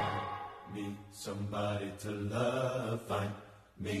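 Group of voices singing quietly and mostly a cappella in short chanted phrases with brief pauses. This is the hushed breakdown of a gospel-style pop choir arrangement, and a new sung word comes in near the end.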